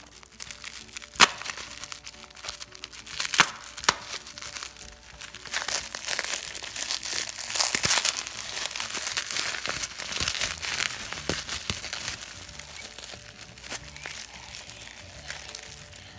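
Plastic bubble wrap crinkling and rustling as it is cut open with a pocket knife and pulled apart by hand, with a few sharp snaps in the first four seconds and the densest crackling about halfway through.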